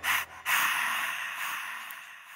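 The end of a hip-hop beat. The bass drops out, two short noisy hits sound, then about half a second in a loud hiss-like noise starts and slowly fades away.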